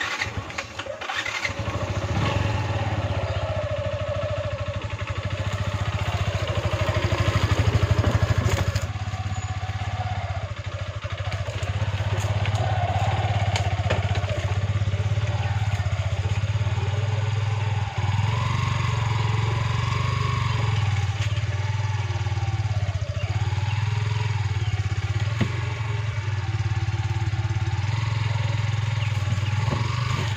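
Motorcycle engine starting up and then running steadily at low speed while towing a loaded wooden cart, with a brief rise in engine speed several seconds in.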